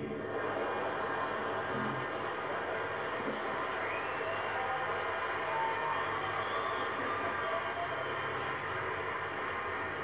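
Theatre audience applauding steadily throughout, a sustained applause break with no let-up.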